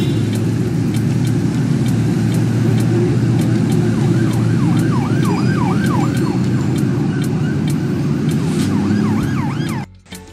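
Sound effect under a countdown graphic: a steady low rumble with scattered sharp clicks, joined from about four seconds in by a fast rising-and-falling siren wail. It all cuts off just before the end.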